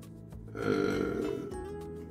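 Background music with steady tones throughout. About half a second in comes a man's drawn-out low vocal sound, lasting about a second.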